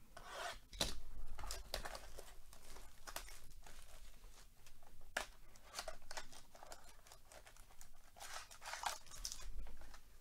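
A sealed trading-card hobby box being torn open by hand: cardboard flaps ripping and plastic wrapping crinkling, in a run of short tearing and rustling sounds, loudest about a second in and again near the end.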